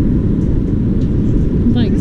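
Wind buffeting the action camera's microphone: a loud, steady low rumble.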